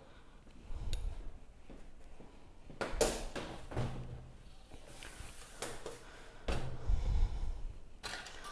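A few soft knocks and scrapes, spread out and quiet: a plastic bubble-remover tool worked down inside a glass canning jar of chunky salsa to release trapped air bubbles before sealing.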